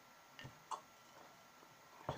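Near-quiet room with two brief clicks, close together about half a second in, the second one sharper.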